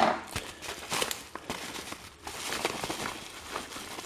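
Padded paper mailer being opened and handled: irregular rustling and crinkling of the envelope, loudest at the very start.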